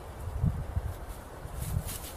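Rustling and handling of a small fabric knapsack as it is opened, with dull low thumps throughout and a few brief crisp rustles near the end.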